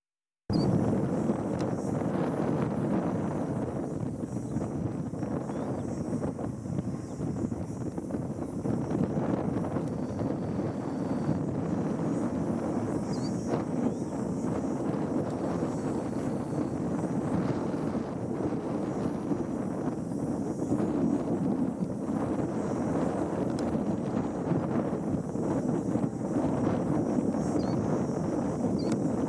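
Wind buffeting the microphone over a steady low hum, with a few faint, short high chirps. The sound drops out for a split second at the very start.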